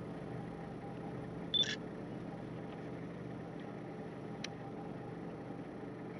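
Steady low hum of an idling vehicle engine. A brief high chirp comes about one and a half seconds in, and a single sharp click about four and a half seconds in.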